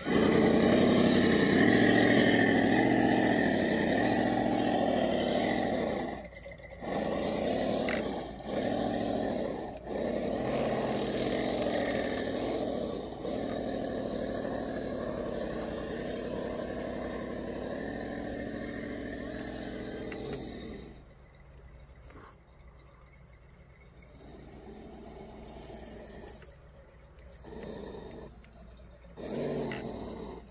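Electric motor and gear drivetrain of a 1/10-scale RC rock crawler whining as it climbs a steep dirt hill, its pitch rising and falling with the throttle and stopping briefly several times. About two-thirds of the way through it becomes much quieter.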